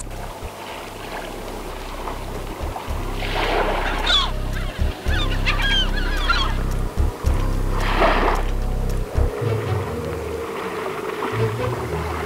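Birds calling in a few bursts of goose-like honks over a low steady hum, which stops about nine seconds in.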